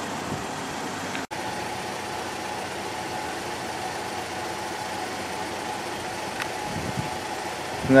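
Steady mechanical hum and hiss with a faint steady tone, cutting out for an instant about a second in.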